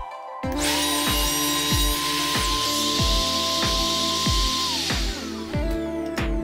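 Background music with a steady beat, over the high hiss of a Festool OF 1010 router cutting box-joint fingers through a 3D-printed jig. The cutting noise stops about five seconds in while the music carries on.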